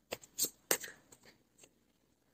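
Tarot cards being handled: a few short, soft flicks and rustles of card stock in the first second and a half.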